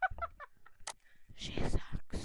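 A child's quick run of short, staccato laugh-like vocal sounds, then two loud rustling bursts of clothing brushing against the microphone, about midway and again near the end.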